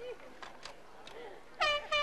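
A short blast of a handheld air horn from the crowd about a second and a half in, a single held note lasting about a third of a second, over faint crowd voices.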